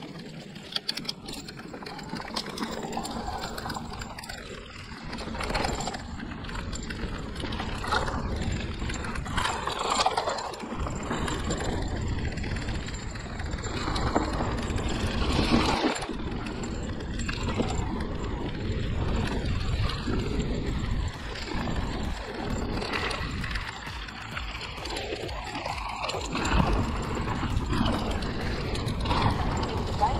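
Riding noise from a hardtail mountain bike on a leaf-covered dirt trail: tyres running over dry leaf litter and roots, with short knocks and rattles from the bike over bumps, over a low, uneven rumble that swells and falls every few seconds.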